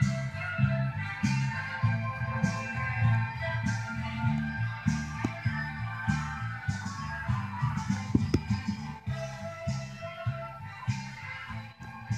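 Music from a vinyl record playing on a Dual 1257 belt-drive turntable, with a moving bass line and a steady drum beat.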